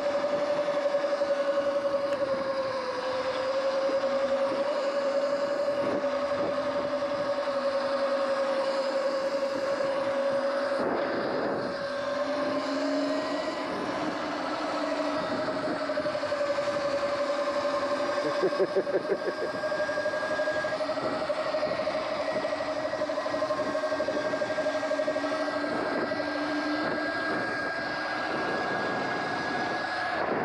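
Electric bike motor whining at a steady pitch that drifts slightly up and down with speed, over a rushing noise of wind and tyres on pavement. A brief rattle about two-thirds of the way through.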